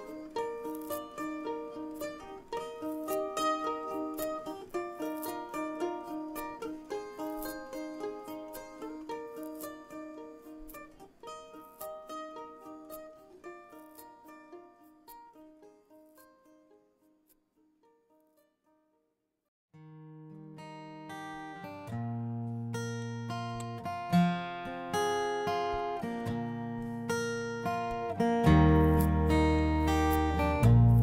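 Background music: a light plucked-string tune fades out over the first half. After a couple of seconds of near silence, a louder guitar piece with deeper bass notes starts about two-thirds of the way in.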